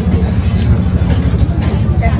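A loud, steady low rumble of background noise, with faint voices over it.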